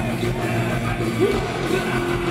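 Punk band playing live: loud, dense electric guitar, bass and drums, with the singer shouting the vocal into the microphone.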